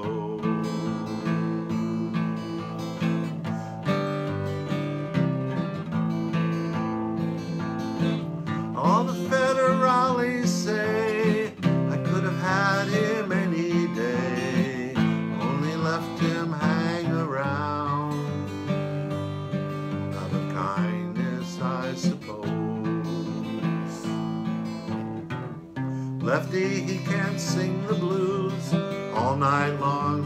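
Acoustic guitar strummed steadily in a folk-country accompaniment. A man's voice carries a wavering melody over it in two stretches, about a third of the way in and near the end.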